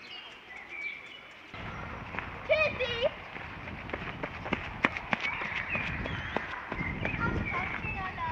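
Park ambience picked up by a 1974 AKG D99c binaural dummy-head microphone: birds chirping, and from about a second and a half in a louder steady rumble with scattered sharp clicks and a brief call.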